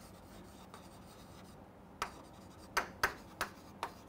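Chalk writing on a chalkboard: a quiet first half, then about five short, sharp chalk strokes and taps in the second half as letters are written.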